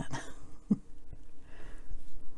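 A woman's brief throat sound, like a small cough or throat-clearing, a little under a second in, after the tail of a spoken word, followed by a faint breath.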